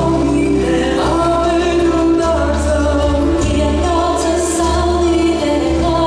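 Latvian folk dance music: a group of voices singing together over sustained instrumental accompaniment with a steady bass.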